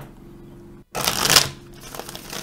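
Golden Universal Tarot deck shuffled by hand: quiet handling at first, then a loud burst of cards rushing through the hands about a second in, lasting about half a second.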